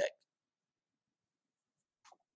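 The last syllable of a man's spoken word in the first instant, then dead silence.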